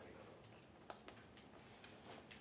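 Near silence: quiet room tone with three faint clicks, two close together about a second in and one near the end.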